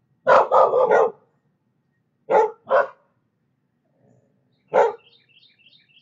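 A dog barking in short groups: a quick run of barks right at the start, two more a little after two seconds in, and a single bark near the end.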